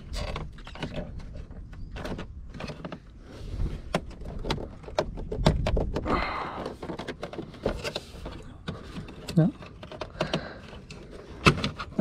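A plastic dash trim cover being worked loose by hand: a run of small clicks and knocks with a stretch of scraping about five to six seconds in, as its clip lets go and its edge catches on the door weather stripping.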